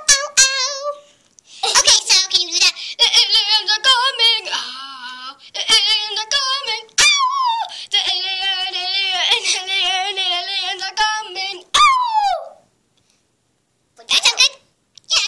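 A child singing a made-up song about aliens in a high, wavering voice that slides down in pitch to end the song about twelve seconds in.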